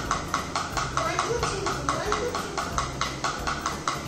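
Wooden drumsticks striking a drum practice pad in a steady, even stream of single strokes, about five a second. The strokes stop right at the end.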